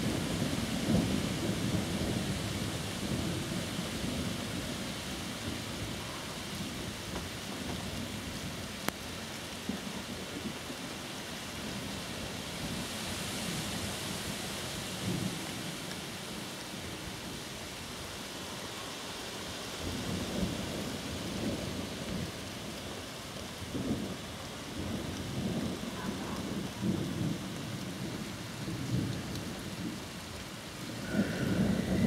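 Steady rain hissing throughout a thunderstorm, with low rolling thunder rumbling in the first few seconds and again in several rolls during the last ten seconds.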